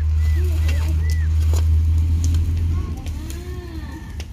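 A steady low rumble that eases after about three seconds, with faint distant voices and a few light clicks over it.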